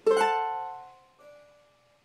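Cavaquinho strumming a D7 chord once; the chord rings and fades away over about a second, with a faint change of notes about a second in.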